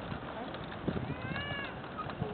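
Plastic toddler tricycle rolling over pavement, its wheels giving an irregular rattling and knocking. About a second and a half in there is one short high call that rises and then falls.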